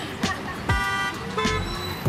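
A car horn honks twice, a blast of about a third of a second near the middle and a shorter one soon after, over background music with a steady beat.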